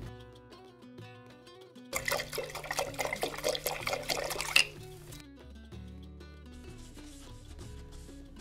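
Soft background music of held notes, over which a paintbrush is swirled and rubbed in a glass jar of liquid for about two and a half seconds, starting about two seconds in, to rinse it.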